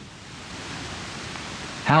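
Steady, even hiss of background noise with no tone or rhythm in it; a man's voice starts again near the end.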